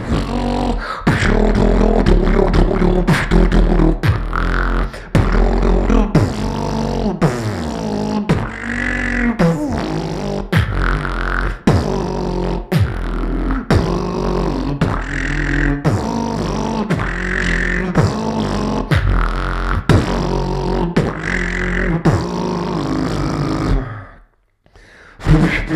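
Solo vocal beatboxing into a handheld microphone: a steady groove of mouth-made kick and snare hits over deep droning bass, with pitched gliding vocal tones woven in. It stops abruptly at the end.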